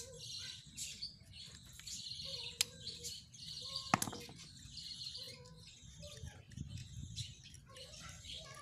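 Small birds chirping in the background, with two sharp metallic clinks; the louder one, about four seconds in, comes as a screwdriver is set down on the concrete floor.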